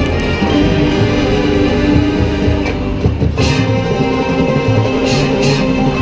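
Marching band playing live: wind instruments holding sustained chords over steady low drum hits, with bright crashes about halfway through and twice near the end.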